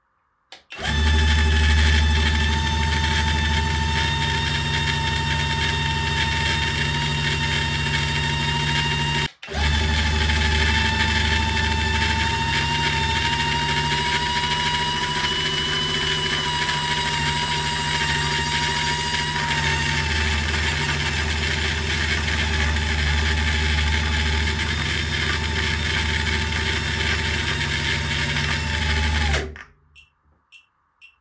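Mickey Mouse Clubhouse Story Teller toy run far over its rated voltage from a bench power supply, giving a loud, steady electric buzz: a high whine over a low hum. It cuts out for a moment about nine seconds in, creeps up in pitch in the middle, and stops just before the end.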